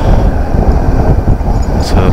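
Steady, loud wind rumble on the microphone from riding a Suzuki V-Strom 650 motorcycle at road speed, with its V-twin engine running underneath.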